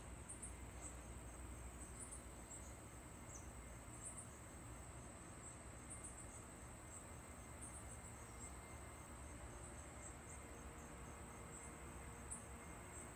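Faint insects chirping: a steady high-pitched trill with short chirps repeating every second or so, over a low background hum.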